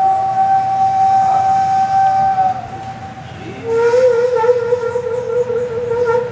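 Daegeum, the large Korean bamboo transverse flute, playing long held notes. A high note is held for about two and a half seconds and fades. After a short dip, a lower note swells in with a breathy edge, wavers briefly and is then held.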